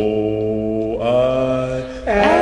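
Male doo-wop vocal group singing sustained harmony chords as a song intro, the chord shifting about a second in.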